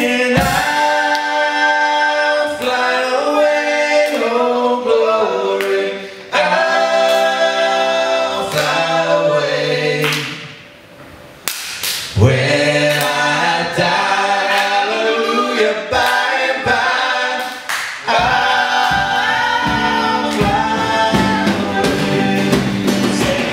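Several male voices singing in harmony a cappella, the bass and drums dropped out, with a short break in the singing about halfway through. The bass and band come back in near the end.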